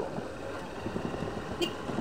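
Steady low running noise of a slow-moving vehicle on an unpaved road, with a brief faint click about one and a half seconds in.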